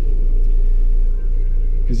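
Steady low rumble of a stationary car's engine idling, heard inside the cabin.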